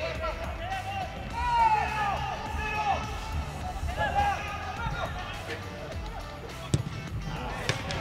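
Football players shouting calls to each other across the pitch, with two sharp kicks of the ball about a second apart near the end.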